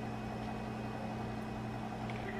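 Quiet, steady low hum: room tone with a constant electrical or appliance hum.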